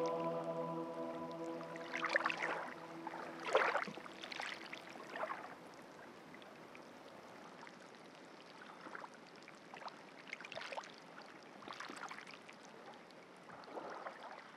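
A sustained sung chord dies away in a long reverberant tail over the first few seconds. Faint water sounds follow: irregular lapping and gurgling splashes, one every second or two.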